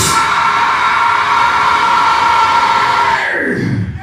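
Distorted electric guitar and bass letting a final chord ring on with steady high tones after the drums stop, at the close of a live metal song. A little over three seconds in, the sound slides down in pitch and cuts off just before the end.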